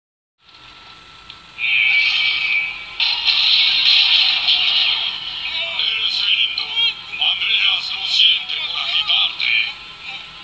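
Soundtrack of an animated TV show, music mixed with voices, played through a television speaker and picked up off it, thin and tinny. It starts faint and grows loud about a second and a half in.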